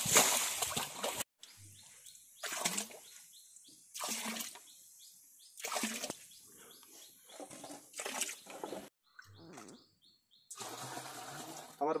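Water being scooped and poured with an aluminium pot in a shallow muddy waterhole: a steady pour that cuts off suddenly about a second in, then a series of separate splashes every second or two.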